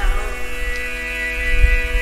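A steady musical drone of several held tones, like a sustained chord, with a low hum underneath that grows louder about halfway through.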